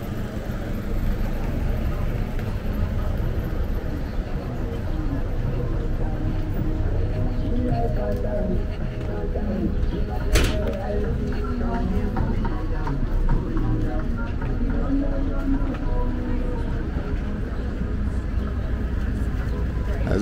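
Busy city street ambience: a steady low traffic rumble with passers-by talking, and a single sharp click about halfway through.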